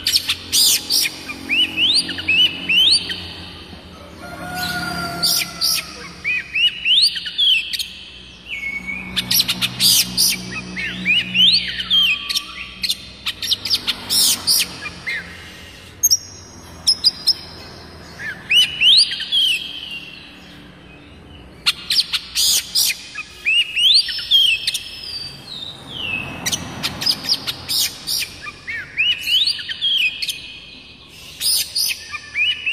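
Oriental magpie-robin (kacer) singing: phrases of rising whistled notes mixed with sharp, rapid clicking chatter, given in bursts with short pauses between them.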